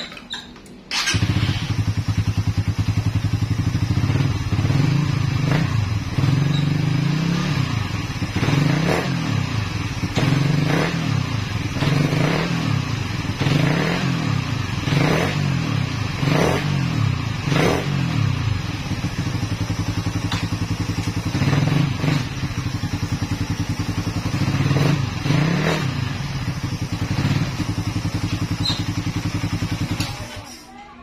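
Suzuki Raider 150 Fi's single-cylinder four-stroke engine starts about a second in and idles, blipped up and down repeatedly with the throttle. The engine is being run to test newly fitted clutch lining and clutch springs.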